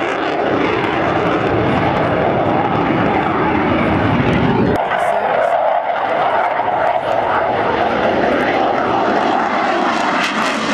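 Jet engine of a fighter jet flying a display pass, a steady loud rushing noise. About halfway through, the deep low part of the sound drops out suddenly, leaving a higher, thinner rush.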